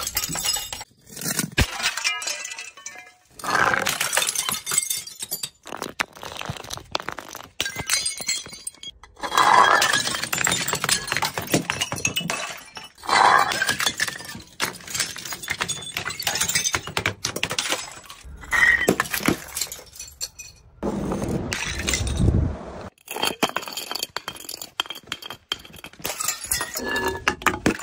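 Glass bottles and jars hitting stone and concrete steps one after another and shattering, each crash followed by shards clinking and skittering down the stairs. A duller, lower crash comes about 21 seconds in.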